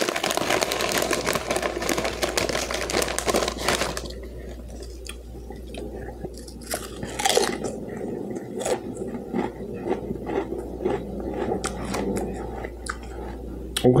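A wrapper crinkling and rustling for about four seconds, then close-up chewing of a crunchy Ferrero Rocher hazelnut chocolate, with small crunches and wet mouth sounds.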